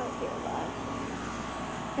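Steady mechanical hum of an outdoor air-conditioning condenser unit running, an even whir with a faint steady tone.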